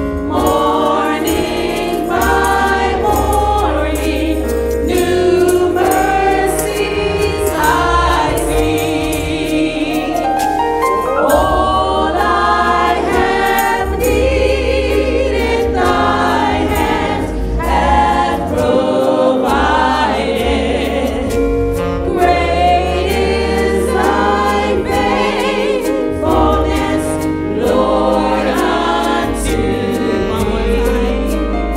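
Church worship team singing a gospel praise song in several voices, with a live band of keyboards, saxophone and drums playing along.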